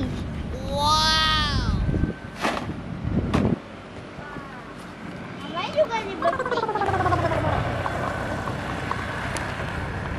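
A child's high voice in long wordless calls: an arching squeal about a second in and a falling call around six seconds, over a low background rumble.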